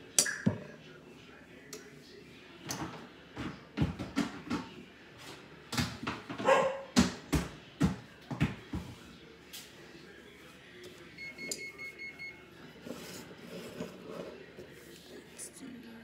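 Irregular clicks and knocks of a measuring spoon and utensils tapping against a mixing bowl while flour is spooned in, with a brief pitched sound about six and a half seconds in.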